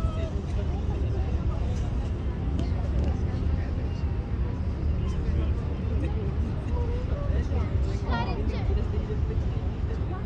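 Steady low rumble of a boat underway, with people's voices talking in the background and a brief high wavering sound about eight seconds in.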